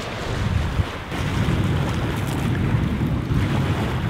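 Wind buffeting the microphone in a low, gusty rumble, over small lake waves washing onto a pebble shore.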